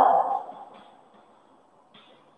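A woman's voice trailing off about half a second in, then quiet room tone with faint scratches of chalk writing on a blackboard.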